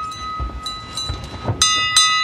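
A bell ringing on after being struck, then struck twice more near the end, with low knocks and rumble underneath.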